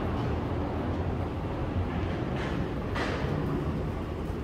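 Steady low rumble of background noise on an open-air railway platform, with a couple of soft swishes near the end.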